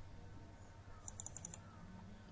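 A quick run of about six computer keyboard keystrokes, sharp light clicks about a second in, over faint background.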